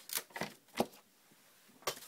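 Cardstock and patterned paper handled and pressed flat on a cutting mat: a few short rustles and taps in the first second, and one more near the end.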